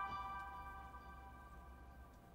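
A struck meditation bell ringing out with several bright overtones, fading away over about two seconds.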